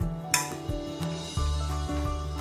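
Background music, with a single sharp metal clink about a third of a second in as the bread machine's metal cooking lid is lifted off the bread pan.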